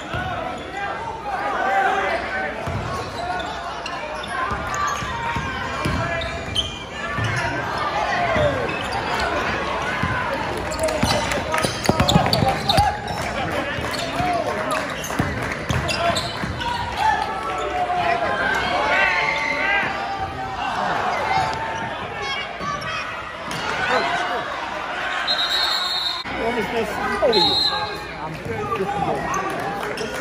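Basketball bouncing on a hardwood gym floor during a game, with spectators talking and calling out around the microphone. Two short high-pitched tones sound near the end.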